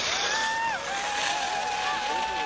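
Spectators yelling long drawn-out shouts of encouragement at a passing ski racer: one held call lasting under a second, then a longer one that carries on past the end, with a second voice joining briefly.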